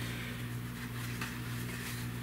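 Steady low electrical hum with faint room noise; no distinct handling sounds stand out.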